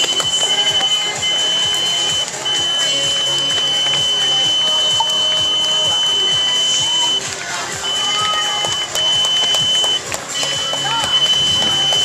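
A high-pitched electronic beep held as a steady tone for seconds at a time, with short breaks about seven, nine and ten seconds in, over background music and voices.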